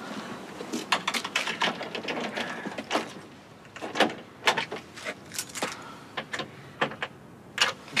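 Keys clicking, jangling and scraping in a front-door lock, a string of short sharp clicks and knocks. The key won't open the door because the lock has been changed.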